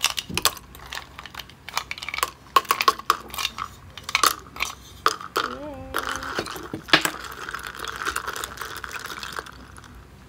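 Ice cubes dropping into a plastic cup of milk tea and a spoon stirring them, making many sharp irregular clinks and clicks.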